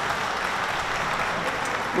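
Audience in the chamber applauding, a steady spread of hand clapping.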